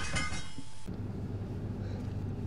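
Aftermath of a car crash: clinking and ringing from the impact fade out in the first second, leaving a low steady hum.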